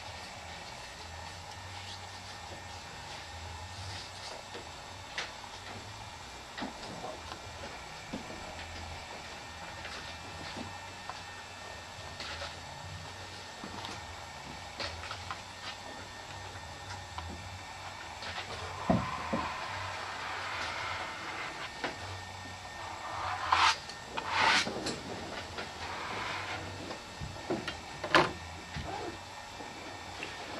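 Quiet handling sounds of collage work: a brush spreading matte medium and paper pieces being smoothed and pressed down by hand, with scattered small taps and rustles over a low steady hum. A single knock comes about two-thirds through, then a few louder paper rustles.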